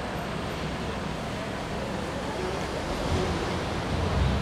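Steady rushing background noise with a low rumble that grows louder near the end; the piano is not being played.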